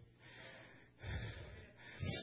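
A man breathing into a microphone: about three soft, noisy breaths between phrases.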